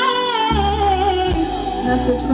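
A woman singing a long held note with a live band; low bass notes come in about half a second in.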